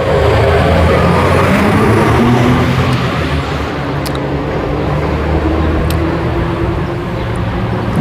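Engine noise of a passing motor vehicle, loudest in the first few seconds and easing off slowly after.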